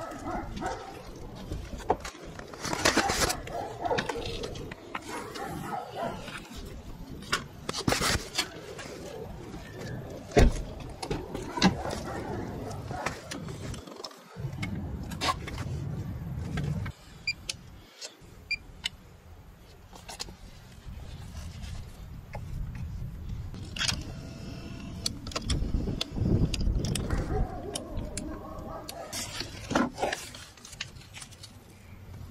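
Scattered clicks and knocks from hands working around the open doors of a Volkswagen Touareg: the doors, rubber seals and trim being touched and moved, with low handling rumble in between.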